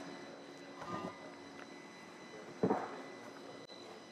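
Quiet room tone with soft handling noise about a second in and one short knock a little past halfway, as an aluminium engine case half is lifted and set down into a foam-lined box.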